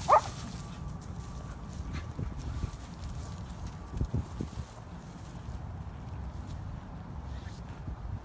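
A dog gives one short, high yelp while play-wrestling with another dog. After that there is only a low steady rumble, with a couple of soft knocks about four seconds in.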